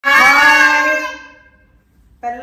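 A woman and a young girl calling out one long, drawn-out greeting together, loud at first and fading away by about halfway through.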